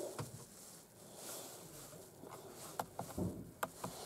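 Several faint, sharp clicks spread over a few seconds: the buttons on a Renault ZOE's steering wheel being pressed to scroll through the instrument-cluster screens.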